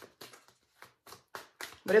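A deck of tarot cards being shuffled overhand, the cards slapping together in short, irregular taps about three or four times a second.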